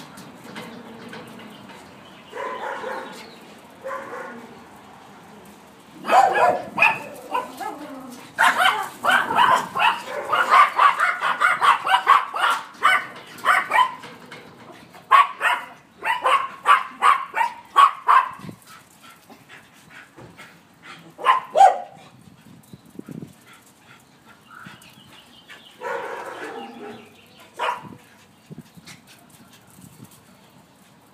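Small dogs, Yorkshire terriers among them, barking: a few scattered barks, then a long flurry of rapid, high barks starting about six seconds in, followed by shorter bouts with pauses between.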